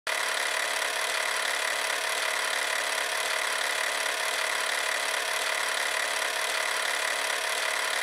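Steady, even hiss with a faint steady tone in it, unchanging throughout, with no music.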